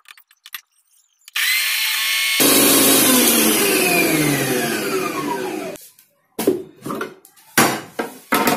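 Usha food processor's juicer motor switched on a little over a second in, spinning pomegranate seeds and pulp through the juicer. It gets louder after about a second, then its pitch falls steadily until it stops near six seconds. A few sharp plastic clicks and knocks follow as the lid and parts are handled.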